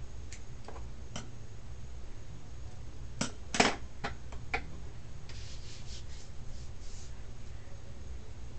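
Hands handling a hair weft against a wig cap: scattered soft clicks, a louder cluster of clicks a little over three seconds in, and a stretch of soft rustling of hair about five to seven seconds in, over a steady low hum.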